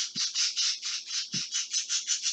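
Rapid, evenly spaced chirping from a bird or insect, about seven chirps a second, over a faint steady low hum.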